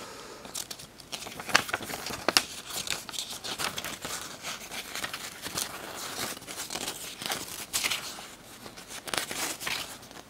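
Paper and thin card rustling and crinkling as a CD's cardboard sleeve and its small paper booklet are handled and the pages turned, a run of short crackles with a few louder ones.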